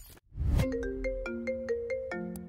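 FaceTime incoming-call ringtone on a Mac: a quick run of bright, plucked-sounding notes, about five a second, signalling an incoming call. A low thud comes just before the ringing starts.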